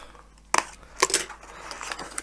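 Small cardboard box being opened by hand, a yellow tool working at its taped edge: two sharp snaps of cardboard, about half a second and a second in, then faint scraping and crackling of the cardboard.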